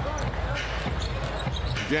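Basketball being dribbled on a hardwood court over the steady murmur of an arena crowd.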